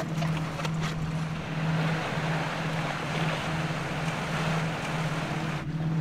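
Surf and wind ambience on a rocky shore: an even wash of noise that swells for a couple of seconds, over a steady low hum that pulses about twice a second.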